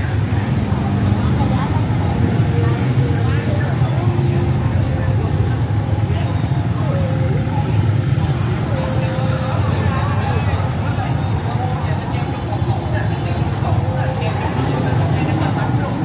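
Motorbike engines running in a steady low hum, with scattered voices of a market crowd over it.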